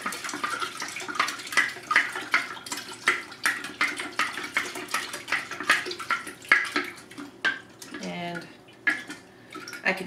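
A spoon stirring sugar into tea and lemon juice in a glass mason jar: rapid, irregular clinks of the spoon against the glass over swishing liquid, thinning out near the end. The sugar is still dissolving, with grit left on the bottom of the jar.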